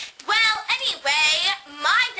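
A girl singing in a showy way: long held notes with a wavering pitch, the second one the longest, sliding upward near the end.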